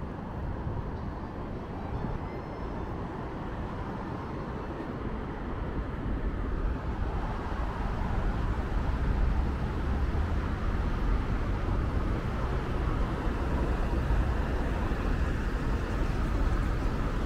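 City road traffic: a steady noise of passing cars, growing louder about halfway through.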